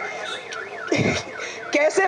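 A warbling electronic alarm, its pitch sweeping rapidly up and down about four times a second, with a brief low thud about halfway through.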